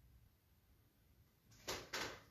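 Two short whooshes close to the microphone, about a quarter second apart near the end, against room tone.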